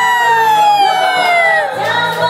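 A voice holds one long, high note that slowly falls in pitch and breaks off shortly before the end, over karaoke backing music.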